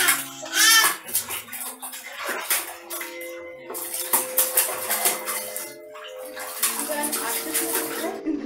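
A baby gives two loud, high squeals of delight in the first second, then splashes and slaps the water in a plastic tub in quick, irregular splashes.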